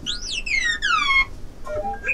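Electronic robot chirps: one rising whistle followed by about four quick falling sweeps, like a robot vacuum 'talking' in reply.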